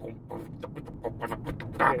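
A quick run of soft mouth clicks and breathy puffs, about a dozen in under two seconds, over the steady low rumble of the car's road noise; a man starts talking near the end.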